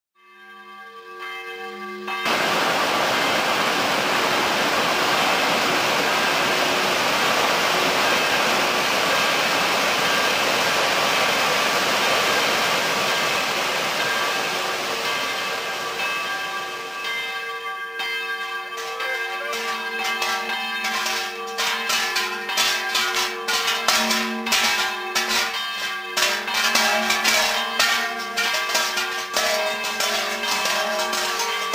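Large bells worn by a group of carnival bell-ringers (zvončari) clanging. At first they make a dense, continuous wash of ringing; from about 18 s the clangs fall into a rhythm with the ringers' steps as they come closer.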